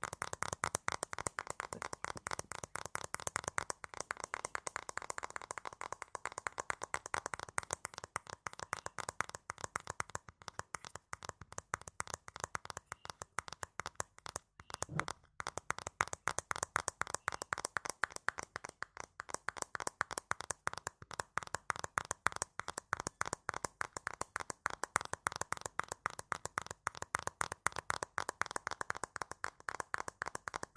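Fingertips tapping and rubbing close to a sensitive microphone, making a rapid, dense crackle of small clicks, with a brief break about halfway.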